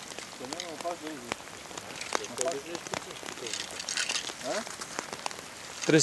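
Rain falling on open water: a steady hiss with many small scattered drop ticks.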